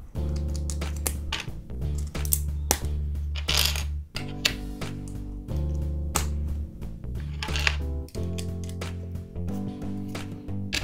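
Background music with a steady bass line, over sharp clicks of plastic LEGO bricks being handled and pressed together.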